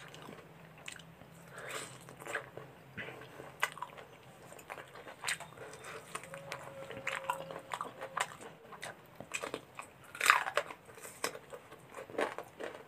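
Close-up chewing and wet mouth sounds of someone eating chicken curry and rice by hand, with scattered lip smacks and soft clicks; the loudest smack comes about ten seconds in.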